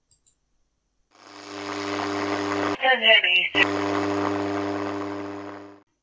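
AM radio receiver noise: a steady buzzing hum over hiss fades in about a second in and fades out near the end. Just before the midpoint the hum breaks off for under a second and a short snatch of a garbled voice comes through.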